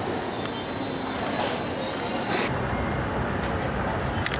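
Steady airport terminal din. About two and a half seconds in it changes to a low rumble with a thin, high, steady whine.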